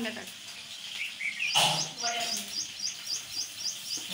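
Chopped onions dropped into hot oil in a steel kadhai, with a loud burst of sizzling about a second and a half in. A small bird chirps rapidly and evenly in the background, about three to four short chirps a second.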